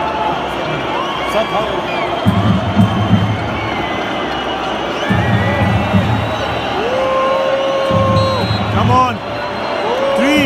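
Large stadium crowd during a penalty shootout: a continuous din of many voices shouting, with long piercing whistles from the stands in the second half.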